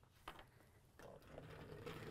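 Near silence: room tone, with a faint click about a third of a second in.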